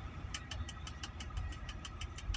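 Low, steady rumble of a running vehicle, with a rapid, even ticking of about seven ticks a second.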